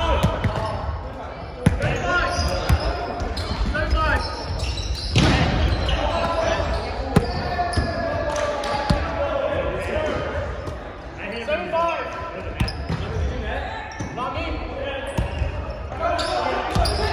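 Indoor volleyball being played in a large, echoing gymnasium: several sharp thumps of the ball being struck by players' hands and forearms, over players' shouts and chatter.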